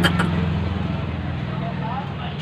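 A low, steady engine-like drone that slowly fades away.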